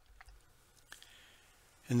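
Near-silent pause in a voice-over narration, broken by a few faint mouth clicks, then a man's narrating voice starting just before the end.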